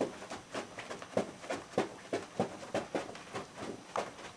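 Footfalls of a dancer's Converse sneakers stepping and kicking on a carpeted floor while skanking: a quick, even run of soft knocks at about four a second.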